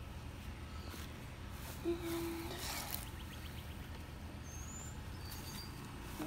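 Quiet outdoor background with a steady low rumble. About two to three seconds in there is a short spell of rustling as junk in a curbside pile is handled, and a brief high squeak comes near the end.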